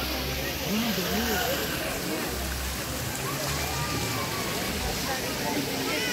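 A stone park fountain running, its water falling and splashing steadily, with people's voices in the background.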